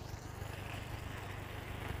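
Boat's outboard jet motor idling low and steady as the boat creeps along, with a faint wash of water and air.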